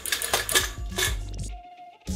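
A can of pennies shaken by a small 12-volt geared DC motor, rattling in short, irregular sputters because the remote controller feeds the relay little pulses instead of a steady current. The rattling stops about one and a half seconds in.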